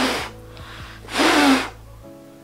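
Two hard puffs of breath blown out through a surgical face mask at a lighter flame, about a second apart, in a mask breath test. Background music runs underneath.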